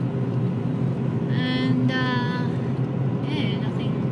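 Steady road and engine noise of a car driving, heard from inside the cabin, with a low, even rumble.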